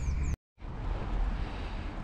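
Wind buffeting the camera's microphone, a steady rumbling noise that drops out to dead silence for a moment about a third of a second in, then resumes.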